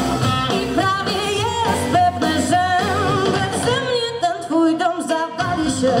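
Live blues-rock band with a harmonica solo: bending, wavering harmonica lines over electric guitars and drums. The bottom end of the band drops away about a second in and comes back in just after five seconds.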